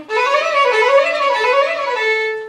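Violin played with the bow: a quick run of notes rising and falling at performance tempo, played as a demonstration of a familiar passage rushed without listening to each note.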